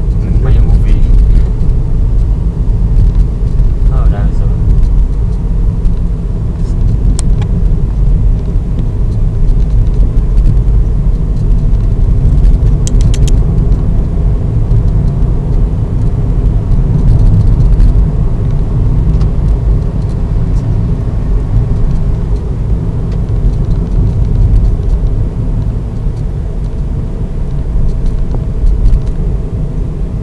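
Steady low road and engine rumble of a car driving, heard from inside the cabin, with a few faint clicks.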